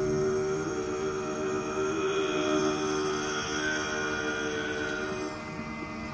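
A bowed upright string fiddle played solo in long sustained notes, a little quieter from about five seconds in.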